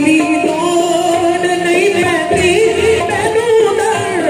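Qawwali: male voices singing long, wavering, ornamented lines over sustained harmonium notes.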